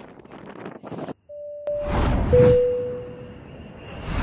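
Wind and surf noise on a beach cuts off abruptly about a second in. An animated-title sound effect follows: a short tone, a sharp click, then a whoosh swelling into a loud, deep boom with a held tone that fades over about a second.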